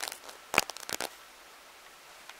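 Camera handling noise: a quick cluster of clicks and rustles about half a second in, then quiet room tone.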